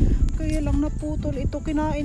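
A melody of short, level held notes that step in pitch, with wind rumbling on the microphone.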